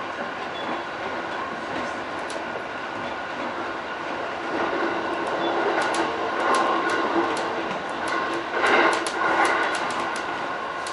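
E531 series electric commuter train running along the line, heard from inside the driver's cab: a steady rumble of wheels on rail that grows louder about halfway through, with a run of sharp clicks and a louder surge near the end.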